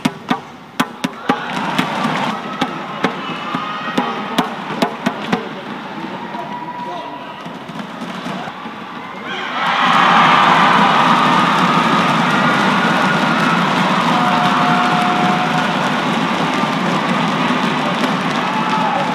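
Badminton rally: quick sharp strikes of rackets on the shuttlecock through the first five seconds or so, over a rising murmur of the crowd. About ten seconds in, loud crowd cheering and shouting takes over and keeps going.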